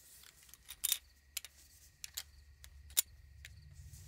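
Small plastic parts of a toy eye model handled with tweezers and fitted together: light clicks and taps, a quick cluster about a second in and a sharp click at about three seconds.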